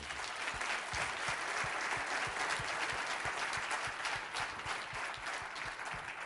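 Audience applauding, many hands clapping together, fading out near the end.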